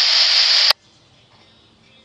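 Scanner radio hissing with loud static at the tail of a transmission, cut off by a sharp click about three-quarters of a second in as the squelch closes. Then only faint background.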